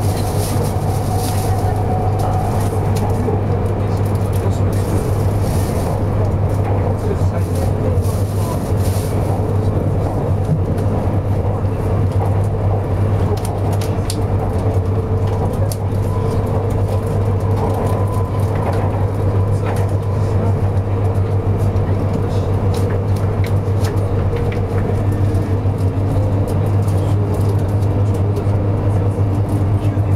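Cabin running noise of a 200 series Shinkansen train at speed: a steady low drone with an even rushing noise over it.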